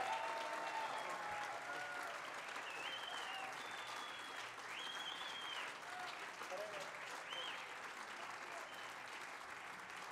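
Audience applauding steadily, with a few high calls rising above the clapping.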